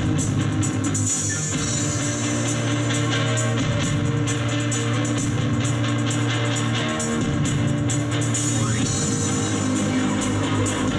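Live rock band playing an instrumental passage with no vocals: electric guitars and bass guitar over a drum kit.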